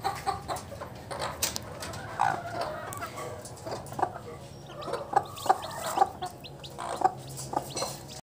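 Native chickens clucking in short calls, a few a second in the second half, with newly hatched chicks peeping thinly around a brooding hen.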